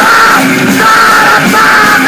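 Hardcore punk band playing live: electric guitars, bass and drums loud and continuous, with the vocalist yelling over them.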